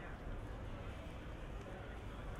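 Outdoor city ambience: indistinct voices of passers-by over a steady low hum of the city.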